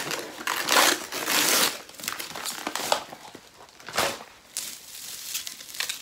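Gift wrapping crinkling in irregular rustles as a heavy present is unwrapped by hand, loudest in the first two seconds, with another sharp rustle about four seconds in.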